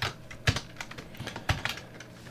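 A few separate computer keyboard keystrokes, the clearest about half a second and a second and a half in.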